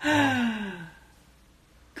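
A man's breathy sigh, falling in pitch over just under a second as his laughter dies away, followed by about a second of near silence.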